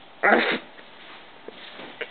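A small dog gives one short vocal sound, a brief bark or grunt, about a quarter of a second in while playing.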